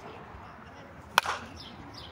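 A softball bat from California Senior Bat Company, The Little Mexican 2024 model, hitting a pitched softball: one sharp, loud crack about a second in, with a brief ring.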